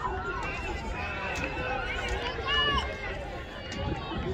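Scattered voices of people calling out and talking across an open outdoor stadium track, none close enough to make out, over a low steady rumble.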